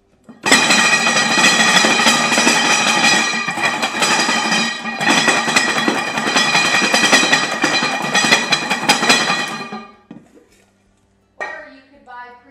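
Garlic cloves shaken hard inside two stainless steel bowls clamped rim to rim, loosening their skins. The rattling is loud and continuous, with a metallic ringing from the bowls, a brief let-up about halfway, and it stops just before ten seconds.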